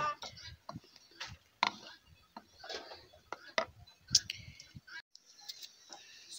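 Irregular light knocks and clicks of a wooden stirring stick against a metal cooking pot as porridge is stirred.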